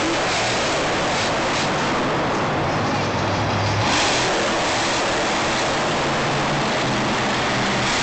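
Monster truck engine revving and running hard across the dirt, over a constant din from the stadium. The loudest moment comes about four seconds in, as the truck reaches the row of crushed cars.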